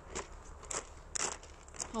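Footsteps crunching on a gravel path, about four steps at roughly two a second.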